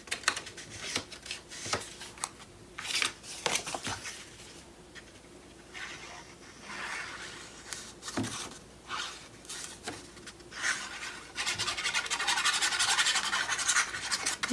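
Paper and card being handled on a cutting mat: scattered short scrapes and taps, then a steadier rubbing sound over the last few seconds.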